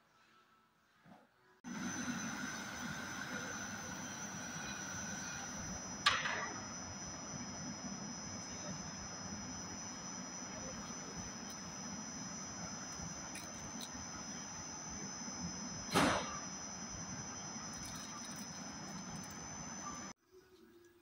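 A steady mechanical noise with a high steady whine starts abruptly after a second and a half of near silence. Two sharp knocks stand out, about six and sixteen seconds in.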